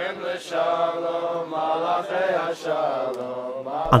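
A slow, chant-like melody sung with long held notes, cut off near the end by narration.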